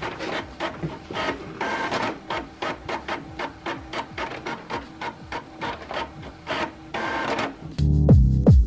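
Inkjet printer printing a page, its print head moving back and forth in quick repeated strokes, about three a second, as the sheet feeds out.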